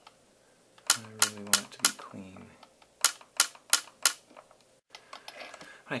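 YAG laser firing in quick volleys of sharp clicks, four shots each, about three a second: two volleys about two seconds apart. These are cleanup shots at the leftover fragments of a vitreous floater.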